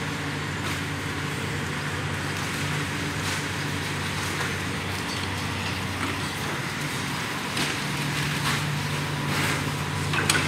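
Diesel excavator engine running at a steady drone under outdoor background noise, with no clear strikes or crashes.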